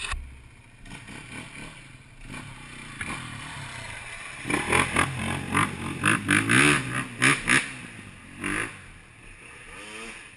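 An off-road motorcycle riding through a shallow river ford, its engine revving with the pitch rising and falling under a broad rush of water and spray. It is loudest as it passes close, from about four and a half to seven and a half seconds in, with one more short burst a second later.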